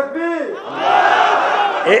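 A crowd of voices shouting together. A single voice leads in at the start, and the crowd's shout holds steady for the rest.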